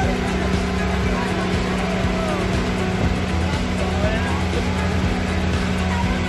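Outrigger boat's engine droning steadily at one unchanging pitch while under way, with faint voices over it.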